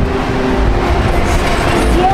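A vehicle passing on a city street, with a continuous low rumble.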